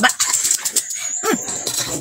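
Wet slurping and chewing of juicy watermelon bites close to the microphone, with a thin high whine held over it. About a second and a half in there is a short hummed 'mm'.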